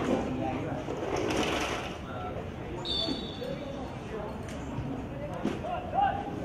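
Open-air football pitch sound: scattered distant shouts from players and onlookers, and the dull thuds of a football being kicked, one about five and a half seconds in and another at the end. A brief high whistle tone sounds about three seconds in.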